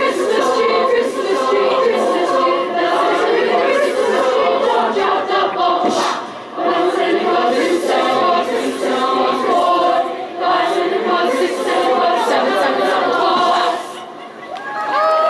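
Children's choir singing a cappella, with two short breaks in the singing, about six and a half and ten and a half seconds in.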